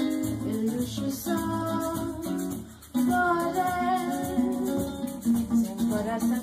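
Nylon-string acoustic guitar strumming bossa nova chords, with a voice singing the melody over it and a shaker keeping a steady rhythm. The music drops out briefly a little before halfway, then picks up again.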